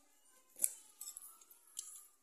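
A few faint clicks and light knocks of a small stainless-steel food box being handled and opened, the clearest about half a second in.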